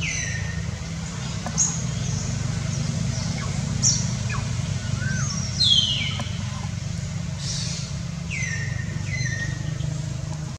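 High-pitched animal calls, each a brief cry sliding downward, come about seven times at uneven intervals over a steady low hum.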